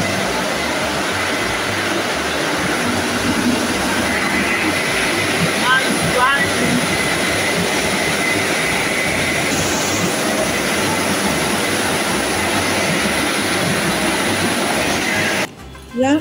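Automatic gantry car wash machine running over a car, a loud, steady rushing noise that stops abruptly near the end as the wash cycle finishes.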